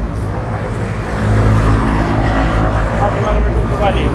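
A motor vehicle's engine running close by, a low steady hum that grows louder about a second in and holds.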